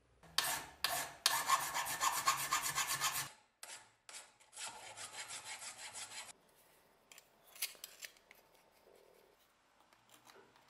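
Flat hand file rasping across a copper handle blank clamped in a steel vise. It goes in quick rough strokes: a run of about three seconds, two single strokes, then a second shorter run. After that there are only a few light clicks.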